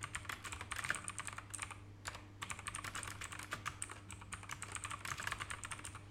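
Typing on a computer keyboard: a quick run of key clicks, a short pause about two seconds in, then a second longer run of typing.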